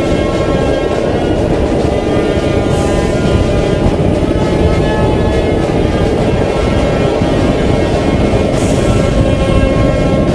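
Steady, loud wind buffeting the camera microphone at downhill longboarding speed, with a constant low rumble of rolling over asphalt.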